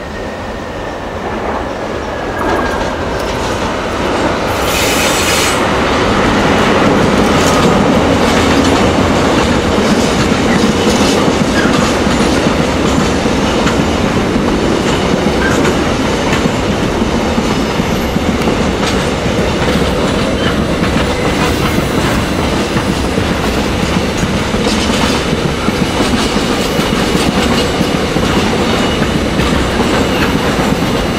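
Container freight train hauled by a Korail Hyundai Rotem–Toshiba electric locomotive passing close by. A high tone falls in pitch as the locomotive goes by, then the rolling rumble and clickety-clack of the container wagons builds over the first several seconds and holds steady.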